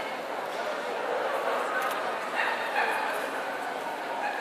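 A dog yipping a few times about halfway through, over the steady chatter of a crowd.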